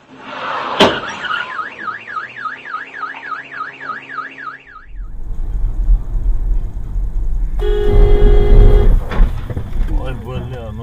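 A car alarm siren warbles up and down about four times a second, starting just after a sharp click. It then gives way abruptly to the low rumble of a car driving, with a loud horn blast of over a second near the end.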